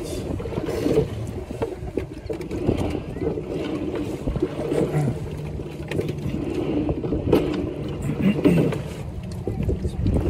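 Coxed quad scull rowing along, heard from the coxswain's seat: wind rumbling on the microphone, with a swell of stroke noise every two to three seconds and scattered clicks from the sculls and rigging.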